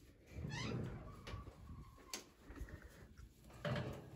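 Electric oven door being pulled open, quietly, with a few short high squeaks about half a second in and a light click about two seconds in.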